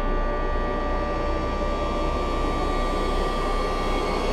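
Title-sequence music for a TV drama: a steady rushing roar with a long held tone running through it.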